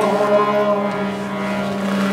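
Harmonium holding a steady drone chord with a few sustained melody notes above it, between drum passages.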